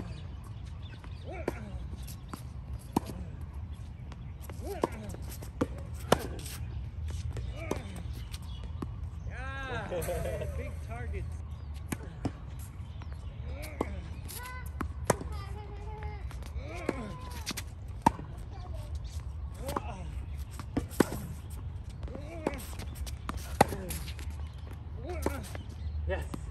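Tennis ball hit back and forth in a rally on a hard court: sharp pops of the ball off racquet strings and court bounces, about one every second or so.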